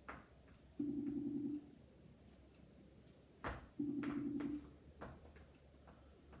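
Ringing tone of an outgoing call waiting to be answered: a short steady tone sounds twice, about three seconds apart. A few faint clicks fall in between.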